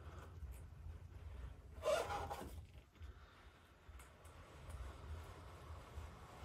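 Plexiglass scraper drawn slowly through a thick layer of wet acrylic paint on canvas: a faint, soft rubbing smear, with one brief louder swish about two seconds in.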